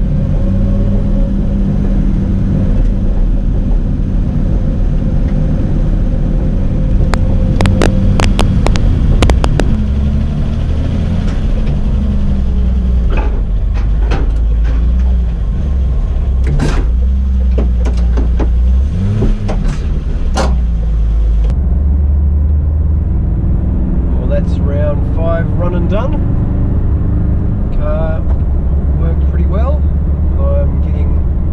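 Inside the stripped cabin of a BMW E30 race car, its naturally aspirated M30 straight-six running at low speed, with a series of sharp clicks and knocks. About 21 seconds in, the sound changes to a road car's cabin with steady engine and road noise and a man's voice.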